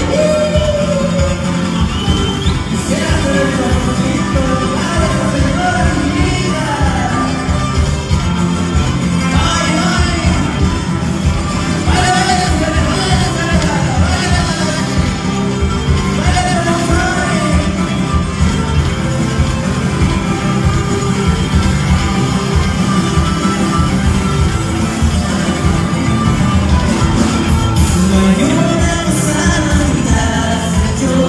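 Live band playing a song with a lead vocal: acoustic guitars, a small strummed string instrument and drums, amplified over a stage sound system.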